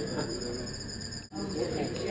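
Crickets chirping steadily at a high pitch in the background, over a low murmur, with a brief break in the sound about halfway through.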